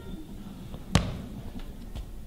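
A tall pole prop planted on a stage floor, one sharp thump about a second in.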